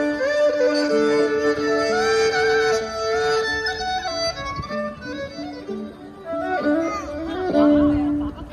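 Solo violin played live by a street musician: a slow tune of long held notes, some with a slight waver.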